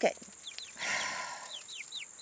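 Young chickens peeping: short falling chirps repeated several times, over a steady high insect drone. A brief rustling noise comes about a second in.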